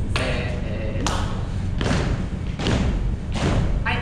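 Heavy thuds in a steady rhythm, a little under one a second, over a constant low rumble, with a voice heard briefly between them.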